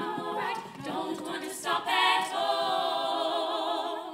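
Female a cappella group singing in close harmony, with no instruments. The voices settle onto a long held chord over the last second and a half.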